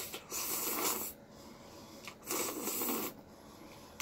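Two long slurps of ramen noodles, coated in spicy tteokbokki sauce, drawn in through the lips from chopsticks; each lasts nearly a second, the first a moment in and the second about two seconds in.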